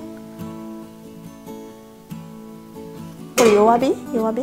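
Background music with acoustic guitar, soft and steady, then a voice cuts in loudly near the end.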